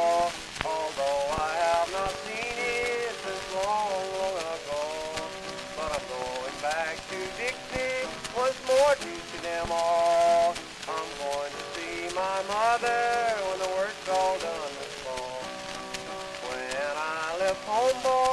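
Instrumental break on a 1925 acoustic-era 78 rpm record: guitar with a held melody line whose notes bend and slide, under the steady crackle and hiss of the record's surface noise.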